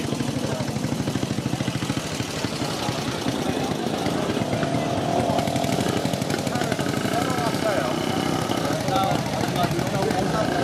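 A classic motorcycle engine running steadily with an even, rapid beat, under the chatter of a crowd of people.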